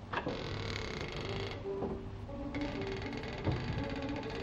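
Background music: low bowed strings playing a few slow, held notes, with a single knock just after it begins.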